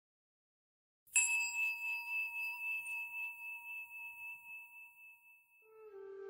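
A single bell struck once about a second in, ringing with a clear, wavering tone that slowly fades over several seconds.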